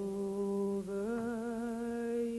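A female singer's voice holding a long unaccompanied note with vibrato, stepping up slightly to a second held note about a second in.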